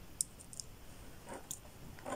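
A few faint, light clicks of glass beads and crystals as a hand-held beaded brooch is turned in the fingers, with a soft rustle of handling.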